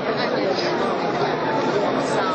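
Crowd chatter: many people talking at once in a steady hubbub of overlapping voices.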